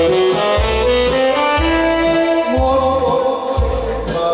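Instrumental break in a Korean trot song: a saxophone plays the melody in held notes over a backing track with a steady bass pulse.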